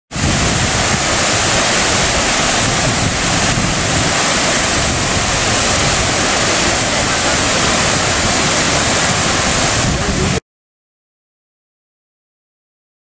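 A mountain stream cascading over rocks, its loud, steady rushing recorded as the untouched natural sound. It cuts off suddenly about ten seconds in.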